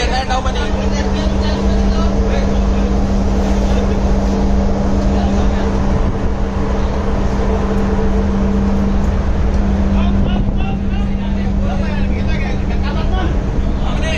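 Steady low hum of ship machinery under a fluctuating wind rumble on the microphone. The hum eases after about nine seconds, and faint voices come in near the end.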